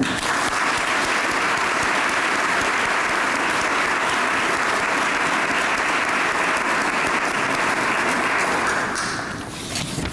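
Audience applauding steadily for about nine seconds, then dying away near the end.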